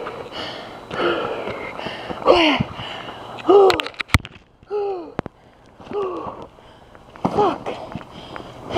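A person breathing hard from the effort of walking uphill under a heavy load. The exhales come about once a second, many of them voiced as short groans that fall in pitch. A few sharp clicks are heard near the middle.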